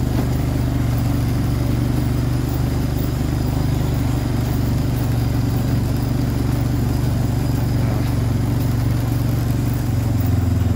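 An ATV engine runs at a steady low throttle while the machine rolls slowly along a rutted gravel road, making an even drone with no change in pitch.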